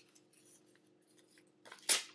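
Scrap copy paper being torn by hand: faint handling, then one short, loud rip just before the end.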